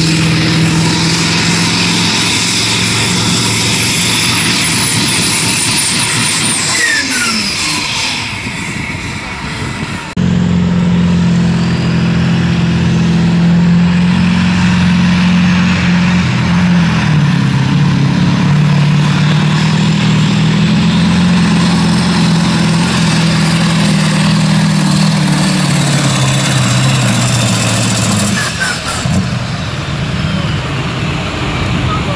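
Pulling trucks' diesel engines running hard under full load as they drag a weight-transfer sled. The first truck's engine fades, with a whistle falling in pitch, then about ten seconds in a second truck's engine takes over, running steadily with its pitch sagging slightly, and eases off near the end.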